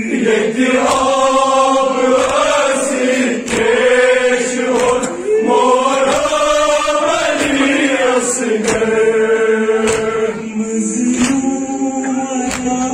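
Voices chanting a Kashmiri noha, a Shia mourning lament, in long drawn-out phrases of a few seconds each over a steady low tone.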